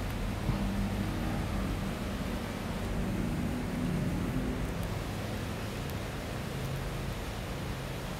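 Steady low background rumble and hiss with no distinct event, only a few faint ticks.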